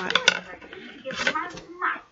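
Thin metal coat-hanger wire clicking and scraping as it is bent and twisted by hand, with a few sharp clicks just after the start, amid short bits of voice.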